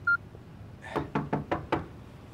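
Hurried footsteps on a wooden floor: a quick run of five or six sharp knocking steps about a second in.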